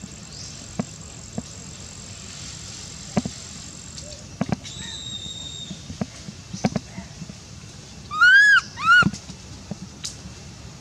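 Baby macaque giving two short high calls close together, each rising then falling in pitch, near the end. Small scattered clicks and rustles are heard around them.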